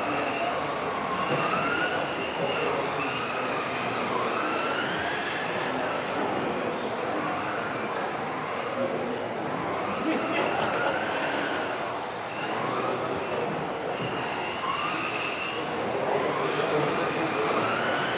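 Several electric RC touring cars racing together, their motors whining and gliding up and down in pitch as they accelerate and slow through the corners.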